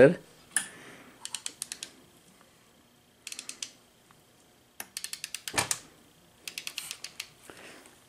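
Socket ratchet clicking in four short bursts of rapid clicks as the nuts on a VW transaxle's side cover are worked loose, with a single louder knock a little past halfway.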